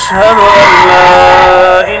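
A toddler crying loudly, a wailing cry that wavers in pitch, over a man chanting the call to prayer (adhan) close by.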